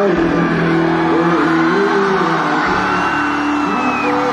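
Live band playing on stage: guitars, drums and keyboards with long held melodic notes, loud and continuous.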